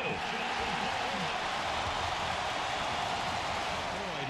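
Large stadium crowd cheering, a steady wash of noise after a fumble recovery.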